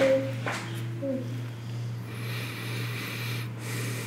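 A man breathing close to a microphone: a couple of short clicks and a brief hummed sound in the first second, then a long breathy exhale, over a steady low hum.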